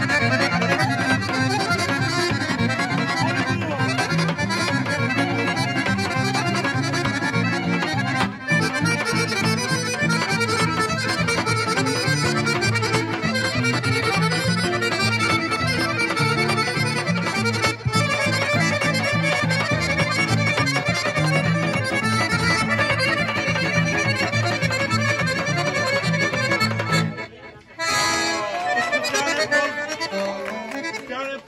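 Live Balkan Roma folk band with clarinet, accordion, acoustic guitar and hand drum playing a fast dance tune. The tune stops abruptly a few seconds before the end.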